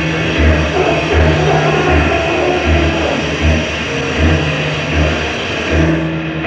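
Live industrial electronic music from a tape recording: a deep synth bass pulse repeats a little more than once a second under a dense, noisy drone and sustained synth tones.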